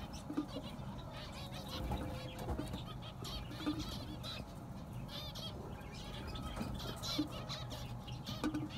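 A colony of zebra finches (white and penguin mutations) calling, many short high-pitched calls, several a second, overlapping.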